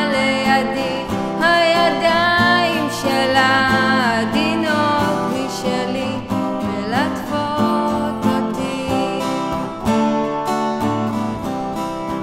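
A song: a voice singing over strummed acoustic guitar. The voice stops about seven seconds in and the guitar strumming carries on.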